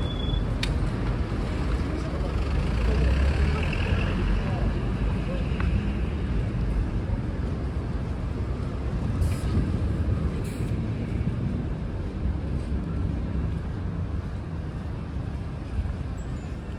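Busy city street traffic: cars, trucks and buses running past with a steady low rumble that swells briefly about three to four seconds in.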